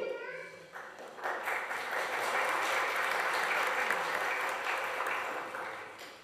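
Audience applauding: the clapping builds about a second in, holds steady, and fades out near the end.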